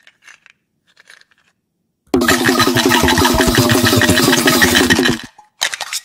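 Cowrie shells rattle faintly as they are shaken in cupped hands. About two seconds in, a loud burst of film background music with a fast repeating figure sets in and lasts about three seconds. A few sharp clicks come near the end.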